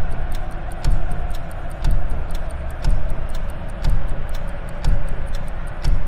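Countdown-clock ticking: sharp clock-like ticks several times a second over a low thump about once a second, with a faint held tone beneath.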